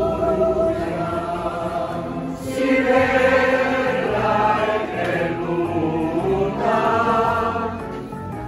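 Music: a song with several voices singing together, choir-like.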